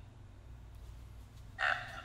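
A low steady hum, then about a second and a half in a brief shrill, voice-like cry.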